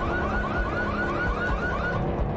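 Car alarm sounding: a rapid train of short rising whoops, about five a second, over a low rumble, cutting off abruptly at the end.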